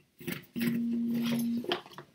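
A man's drawn-out "uhhh" hesitation sound, held on one flat pitch for about a second, between brief soft handling noises as he picks up a backpack.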